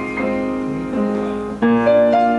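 Grand piano played solo: sustained chords and notes, each ringing on until the next is struck, a few times in the two seconds, with a louder chord near the end.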